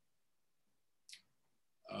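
Near silence: room tone, with one short, faint breath about a second in.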